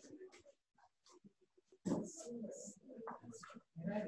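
Faint, choppy voices of people in the room, heard through a phone streaming into a video call, the sound cutting in and out between snatches.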